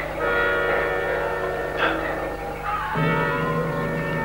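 Dramatic orchestral underscore: sustained chords, with a new, lower chord coming in about three seconds in.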